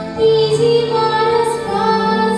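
A young girl singing into a microphone, holding long notes over musical accompaniment.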